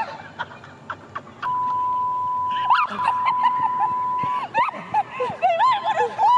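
A steady electronic censor bleep at one pitch, about three seconds long with a short break partway through, over excited voices and laughter.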